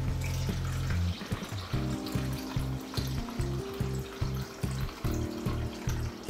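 Background music with a regular beat of low notes. Under it, the faint steady trickle of habanero extract being poured into a paper coffee filter over a glass pitcher.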